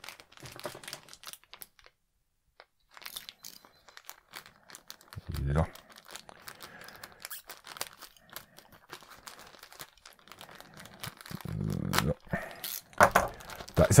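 Clear plastic packaging bag crinkling and rustling in the hands as a small toy accessory is taken out, in many small crackles, with a dull low bump about five seconds in.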